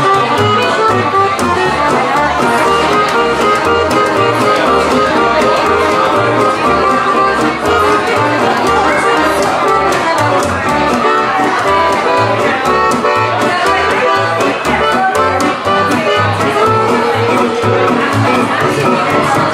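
Live acoustic jazz trio: resonator guitar strummed with a steady rhythm, accordion carrying the melody, and a plucked upright double bass keeping an even pulse of low notes.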